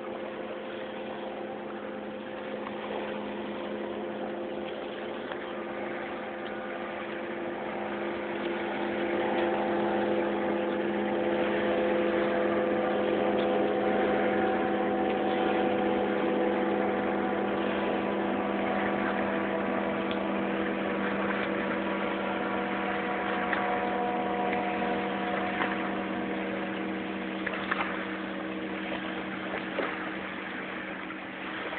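An engine running with a steady, even-pitched droning hum that swells louder about ten seconds in and then slowly eases off.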